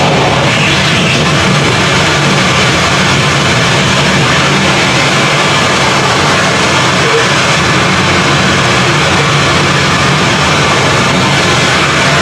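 Live noise music from electronics and effects pedals: a loud, dense, unbroken wall of harsh noise with no breaks or beat.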